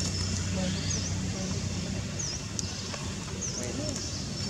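Outdoor ambience: a bird's short, high call repeating about once a second over a low steady hum and indistinct background voices.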